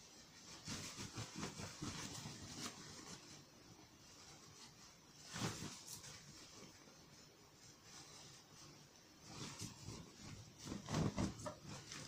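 Faint rustling and handling of fabric, with scattered soft clicks, as a sewn cushion cover of sequinned sari fabric is turned right side out. There is one louder rustle about five seconds in and more rustling near the end.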